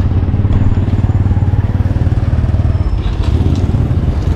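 A small motorcycle engine idling with a steady low rumble, as another motorcycle rides past near the end.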